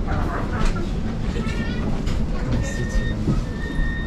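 Interior of a Luxembourg City tram: the tram's steady low rumble, with faint voices of passengers. A steady high-pitched tone comes in about two-thirds of the way through.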